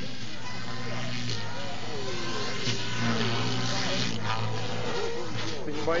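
Motor and rotor hum of an MSH Protos electric radio-controlled helicopter lifting off and climbing, a steady low hum whose pitch shifts a few times. Background voices sit under it, with a short exclamation right at the end.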